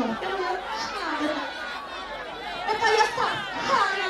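Talking and chatter: several voices speaking at once in a large hall, with no music.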